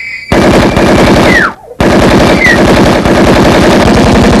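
Automatic gunfire, two long rapid bursts with a short break about a second and a half in. A falling whistle-like tone sounds near the end of the first burst.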